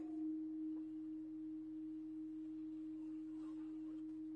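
A steady, unchanging low hum: a single constant tone with nothing else loud over it.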